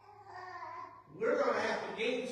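A man's voice preaching, quieter at first and then much louder from about a second in.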